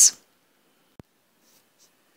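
The tail of a spoken word, then near silence broken by one short, sharp click about a second in.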